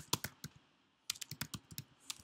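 Computer keyboard keystrokes as a short phrase is typed: a few clicks, a pause of about half a second, then a quick run of keystrokes.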